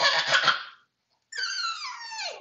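A baby's high-pitched squeal gliding down in pitch, starting a little past halfway, after a short breathy sound at the start.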